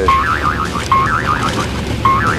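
A short warbling tone phrase, a flat note then a quick up-and-down wiggle, repeated three times about once a second, over a steady low hum.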